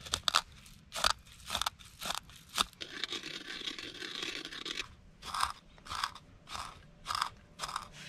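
Whole coffee beans crushed with a wooden stick pestle in a wooden cup: a series of crunching strokes about every half second, with a stretch of continuous grinding in the middle as the beans break down to grounds.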